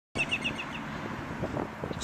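A bird chirping a quick run of about six short, high notes in the first half second, over steady outdoor background noise.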